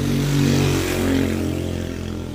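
A motor vehicle engine running steadily, swelling during the first second and then easing off.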